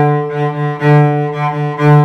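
Cello playing one repeated note with détaché bow strokes in a short-short-long rhythm: two small, quick strokes, then a longer, louder note drawn with a fast bow.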